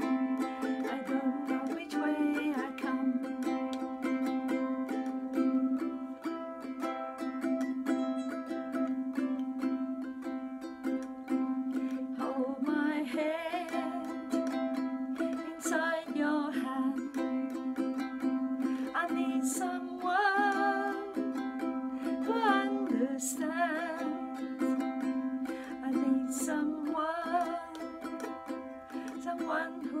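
Wilkinson concert ukulele strummed in steady sustained chords. A woman's voice joins in phrases with a wavering vibrato through the second half.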